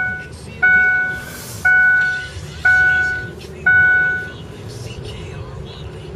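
A car's in-cabin warning chime ringing repeatedly, one sharp ding fading away about every second, then stopping a bit past halfway, over the low steady rumble of the car moving.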